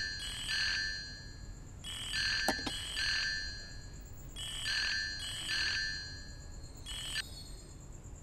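Mobile phone ringing: a short electronic chiming melody, repeating about every two and a half seconds until it is answered.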